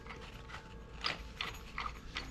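Old wall-mounted water tap handle being worked by hand, giving a few faint, short, uneven clicks and creaks of its metal parts.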